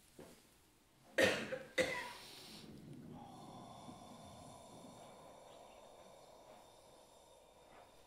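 A person coughing twice, about half a second apart, followed by faint steady background noise.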